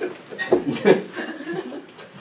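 Scattered chuckling and light laughter from an audience and performers, in a few short bursts.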